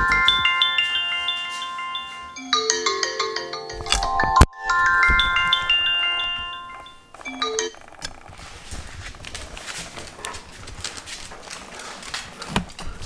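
iPhone alarm ringing: a chiming melody of clear notes that plays through twice and is switched off about seven and a half seconds in. After that only faint handling noise remains.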